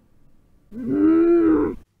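A woman's voice holds a single sung note for about a second, starting a little under a second in. The pitch rises slightly and then falls before it cuts off.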